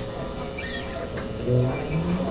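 Quiet live-band stage noise between songs: a short high chirp-like squeak early on, then a few stray low instrument notes as the band readies the next song.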